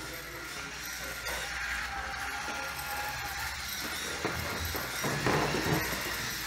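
Electric motor and gear train of a small RC car whirring steadily as the car drives itself across a hardwood floor, with a few low bumps in the last two seconds.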